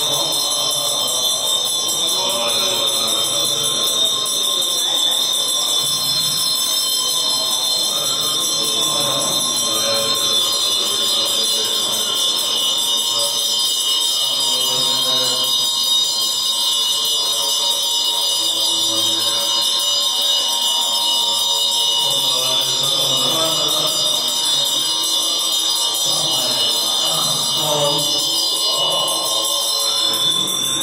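Tibetan Buddhist mantra chanting set to music, with a steady high ringing tone running under the voices.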